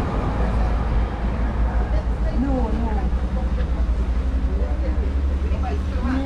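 Faint voices talking at a service counter over a steady low rumble.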